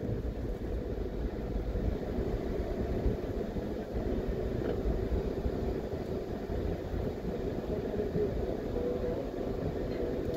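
Steady low rumble of a car driving slowly, its engine and tyre noise heard from inside the cabin.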